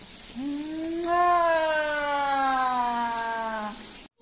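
A long drawn-out vocal sound, one held tone lasting about three seconds and slowly falling in pitch.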